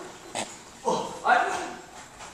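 A person's voice: two short vocal sounds, one after the other, about a second in, preceded by a brief click.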